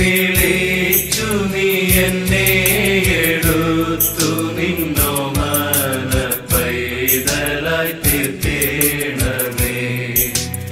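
A Malayalam Christian devotional song: a voice singing a melody over instrumental accompaniment, with a steady beat of percussion strokes.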